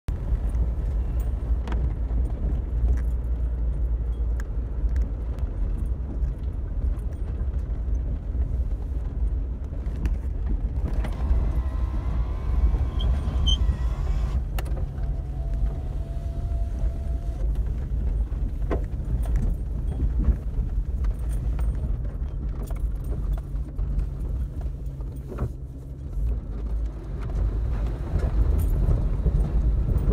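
Jeep Cherokee XJ driving slowly over a rough dirt track: a steady low engine and driveline rumble, with frequent small rattles and knocks as the vehicle bumps along. It grows louder over the last few seconds.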